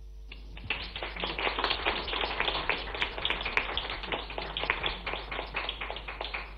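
A small group of people applauding, starting shortly after the beginning: a dense, uneven patter of hand claps.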